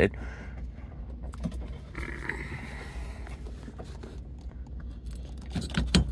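Faint handling sounds with a few small clicks as a bungee cord is worked loose from a TV mount arm, over a steady low hum.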